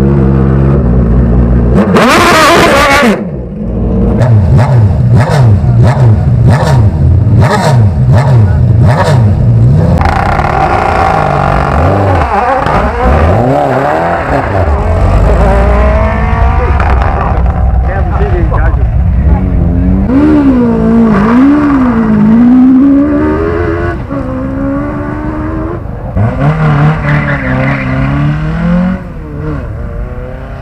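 Radical SR8 sports-racing car's engine revving hard and pulling away, with a run of sharp cracks about twice a second for several seconds, then other competition car engines running and being revved in short up-and-down blips.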